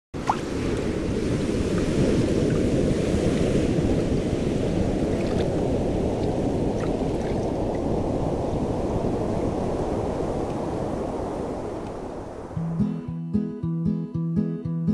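Ocean surf rushing steadily, easing off a little toward the end. A little before the end, an acoustic guitar starts strumming in a regular rhythm.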